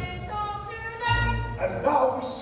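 Live musical-theatre band playing held chords. Near the end, a loud, sharp vocal cry cuts in over it.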